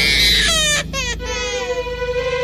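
A high, wailing vocal cry in a film song. It rises sharply in pitch and breaks off twice, then slides downward, over a single steady held note that comes in about a second in.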